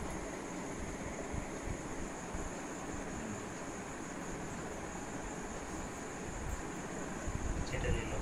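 Steady background room noise with a faint high hiss and soft, irregular low rumbles, and a brief faint sound near the end.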